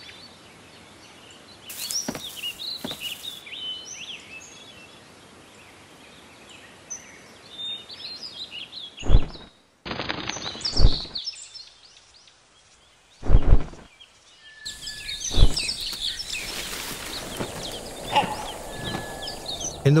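Forest ambience with many small birds chirping and calling in short, rising and falling notes. A few loud, sudden thuds break in around the middle.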